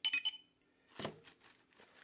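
A short, high clink with a brief ring at the start, then a single knock about a second in.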